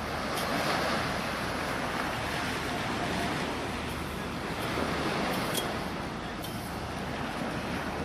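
Surf washing on a sandy beach, a steady rushing that swells about a second in and again around five seconds in, with wind on the microphone.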